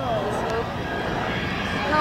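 Bystanders' voices over a steady, distant engine noise.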